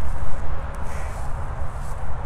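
Low, uneven rumble of wind buffeting the microphone, with no other clear sound.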